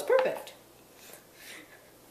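A dog gives two quick, high-pitched whimpers right at the start, then it goes quiet apart from faint small sounds.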